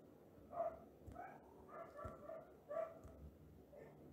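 A dog barking faintly in the background, several short barks at irregular intervals.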